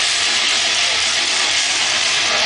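Live heavy-metal band playing loud, overdriven electric guitars and drums, heard as a dense, distorted wall of sound through a phone's microphone in the crowd.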